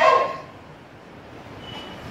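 A man's speech through microphones trails off on one last syllable, then pauses over steady room hiss, with a faint, short, high tone near the end.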